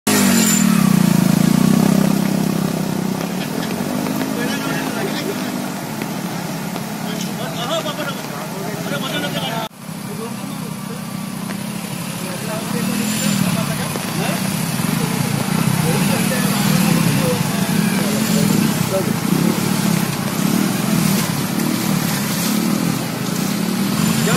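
Motorcycle engines running and revving, rising and falling, over the steady rush of floodwater pouring across a road, with voices mixed in. There is a sudden break about ten seconds in.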